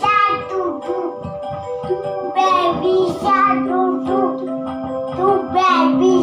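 A young boy singing a children's song over instrumental accompaniment, his voice moving from note to note over steady held backing tones.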